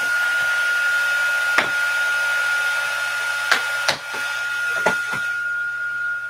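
Embossing heat tool running: a steady high whine over a rush of air. A few light knocks come from handling, and the tool cuts off right at the end.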